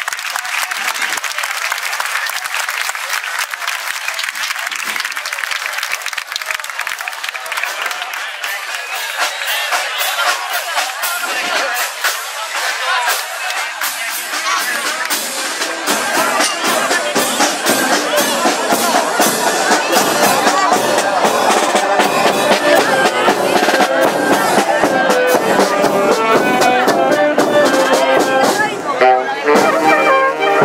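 Crowd chatter and clapping, then about halfway through a small street band of trumpet, saxophone and clarinet with drum starts playing and grows louder.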